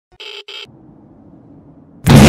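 Two brief bursts of TV-static glitch sound, one just after the other within the first second, then a faint low rumble.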